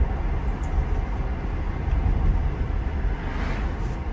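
Steady low tyre and road rumble heard inside the cabin of a moving Tesla electric car.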